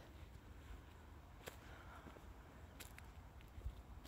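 Near silence: faint outdoor background with a low rumble and a couple of faint clicks.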